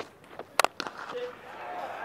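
A cricket bat strikes the ball with one sharp crack about half a second in. Fainter clicks come just before and after it, over quiet ground ambience.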